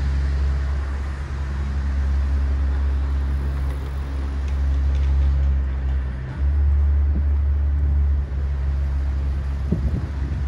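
Wind rumbling on the microphone over a steady low hum of city-street background. The rumble gusts louder for a couple of seconds past the middle.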